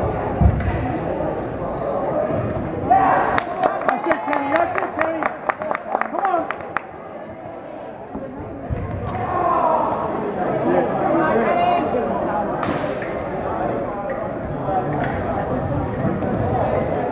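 Foil blades clashing in a rapid run of sharp metallic clicks lasting about four seconds, beginning about three seconds in, with thuds of the fencers' feet on a wooden gym floor and voices of the crowd around them.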